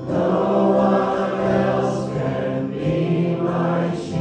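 Church congregation singing a worship song together with musical accompaniment. A new sung line begins right at the start.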